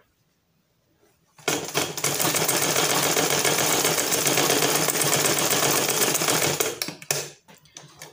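Butterfly sewing machine stitching through layers of gathered net fabric: it starts about a second and a half in, runs as a steady rapid clatter for about five seconds, then gives a couple of short bursts before stopping.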